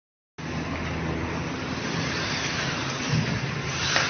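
Steady low hum under a constant wash of background noise, with a faint engine-like quality.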